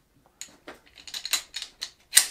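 Handling noise from a pistol held and turned over a nylon backpack: a run of light, irregular clicks and knocks.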